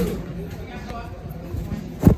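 Indistinct voices of people nearby over a steady low background hum.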